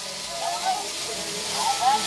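A toy electric train running on its floor layout, heard as a steady hiss under faint voices in the room.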